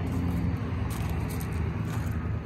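A steady low engine hum.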